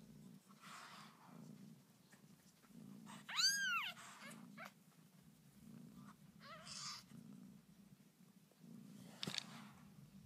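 A cat purring softly in a slow, even in-and-out pulse, with one loud, high mew that rises and falls about three and a half seconds in and a fainter mew near seven seconds. A brief rustle near the end.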